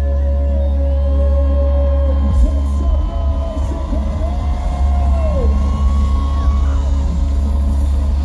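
Live pop-punk band playing loudly through a concert PA, heard from the crowd: heavy bass under long held notes, one of which slides down about two-thirds of the way through.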